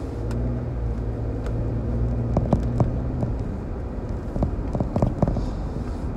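Car cabin noise while driving: the engine and road give a steady low rumble and hum. A few short light knocks come in two clusters, about two and a half seconds in and again near five seconds.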